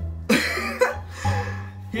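Background music with a steady bass line, and a short, loud burst of a man's laughter starting about a third of a second in.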